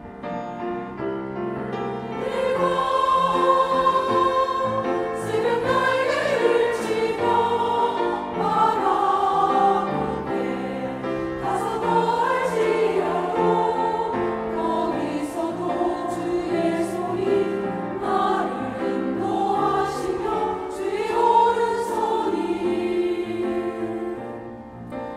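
Church choir singing a Korean sacred anthem to keyboard accompaniment. The accompaniment starts the phrase, and the massed voices, mostly women's, come in about two seconds in and sing on steadily.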